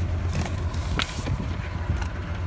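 A 1998 Ford F-150's 4.6-litre V8 idling steadily, with a single sharp click about a second in.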